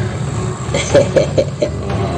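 A person's voice in a quick run of about five short, chuckle-like bursts, over a steady low background hum.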